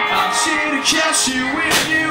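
Live indie rock band playing: electric guitar and bass with a wavering melodic line, and a few drum or cymbal hits.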